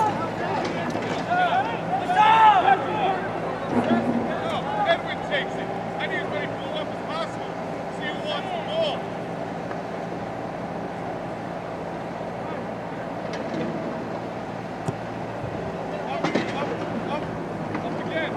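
Voices shouting out on a soccer field, several sharp calls in the first few seconds and a few more near the end, over a steady low hum.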